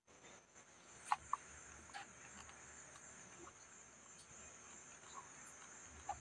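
Faint steady high-pitched chirring of insects, with a few soft clicks about one and two seconds in.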